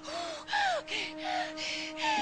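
A woman in labour panting in quick, even breaths, about three a second, with a few short falling whimpers as she breathes through a contraction. Soft sustained music plays underneath.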